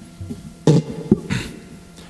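Acoustic guitar strummed twice, a strong chord a little under a second in and a lighter one about half a second later, each ringing briefly and fading.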